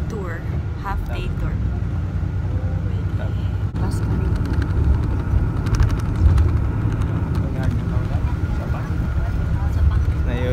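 Steady low rumble of a tour coach's engine and road noise heard from inside the cabin, with faint voices over it.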